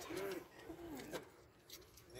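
Two soft, low cooing notes in the first second, each rising and falling, from a bird such as a dove; then only faint background.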